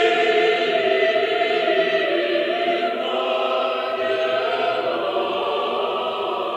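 Russian Orthodox church choir singing unaccompanied in slow, held chords that move to new notes about halfway through, heard from a cassette recording with little treble.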